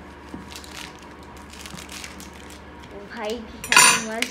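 A sealed cardboard box being opened by hand: small scrapes and clicks, then near the end a short, loud tearing rasp as the clear tape seal is pulled off the box.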